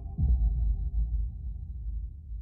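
Deep sound-design boom from a film trailer's closing: a sudden low hit just after the start, dropping in pitch, then a low rumble that slowly fades.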